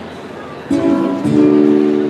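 Acoustic guitar playing malambo accompaniment: after a short lull, one chord is struck about two-thirds of a second in and another just after a second, both left ringing.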